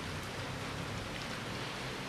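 Steady low hiss of background noise with a faint hum underneath, even throughout.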